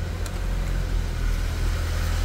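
Delivery truck's engine running with a steady low hum, heard from inside the cab as it creeps through a narrow alley.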